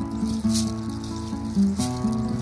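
Acoustic guitar strummed, its chords ringing on, with a few sharp strums across the strings.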